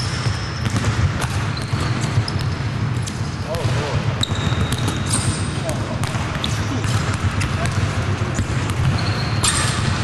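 Basketballs bouncing on the court during shooting practice in a large arena, many irregular knocks, with short high squeaks and players' voices in the background.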